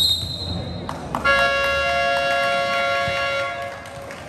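A referee's whistle blows briefly at the start. About a second later a loud, steady two-note horn or buzzer sounds for about two and a half seconds and then stops.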